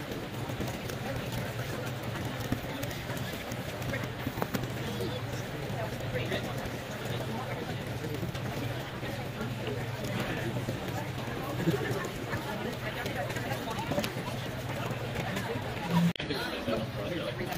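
Indistinct chatter of many people in a large room, no single voice standing out, over a steady low hum that fades out about two-thirds of the way through.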